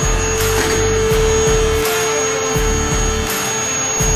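Electric motor of a two-post car lift running with a steady whine as it raises the car, over background music with a steady beat.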